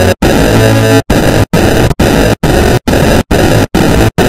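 Loud, harsh, heavily distorted music from a stacked audio-effects edit, cut into short chunks by brief dropouts that come about twice a second from about a second in.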